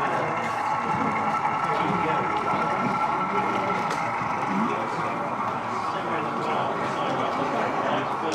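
Indistinct chatter of many people in a hall, with a faint steady hum underneath.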